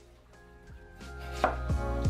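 A chef's knife slicing through a raw peeled potato onto a wooden cutting board, several strokes, the clearest about halfway through.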